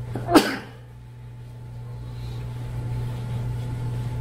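A single short cough from a person, about a third of a second in, over a steady low room hum that slowly grows a little louder.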